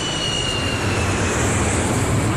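Jet airplane sound effect: a steady engine noise with a high whine that slowly drops in pitch.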